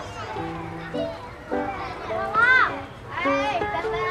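Children's voices calling and chattering, the loudest a single high call about two and a half seconds in, over background music with long held notes.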